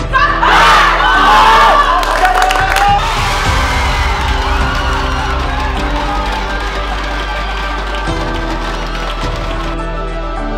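A group of people cheering and shouting in high voices, loudest over the first three seconds, then settling into steady crowd cheering, all under background music.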